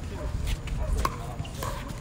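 Pickleball paddles hitting a plastic ball: three sharp pops about half a second apart, over a steady low rumble and faint voices.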